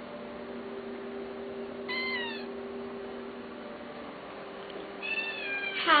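A domestic cat meowing twice, about two seconds in and again near the end, each call falling in pitch, over a steady low electrical hum.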